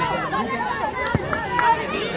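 Several voices calling and shouting over one another during a football match, with one sharp knock a little past halfway through.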